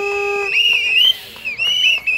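Protesters' whistles blown in long shrill blasts, two sometimes overlapping and wavering in pitch. A lower steady tone sounds through the first half second.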